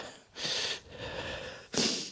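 A man breathing close to the microphone: three audible breaths with no voice in them, the last short and sharp near the end.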